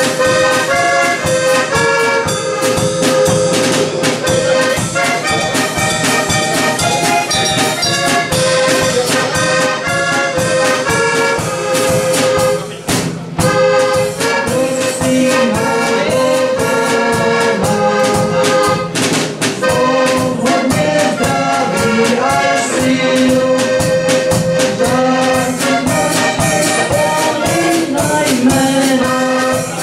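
A heligonka, the Slovak diatonic button accordion, playing a lively folk tune with a drum kit keeping a steady beat. Its reeds sound bright and brassy.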